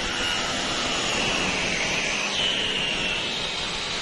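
Onboard sound of a 2018 Ferrari Formula 1 car's 1.6-litre turbocharged V6 hybrid engine running steadily over wind noise, with a high whine that sags in pitch and then jumps back up a little past halfway.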